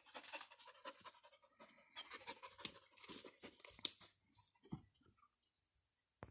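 A Mountain Cur dog panting faintly in quick, irregular breaths, with rustling in the brush as she moves and a sharp snap just before four seconds in.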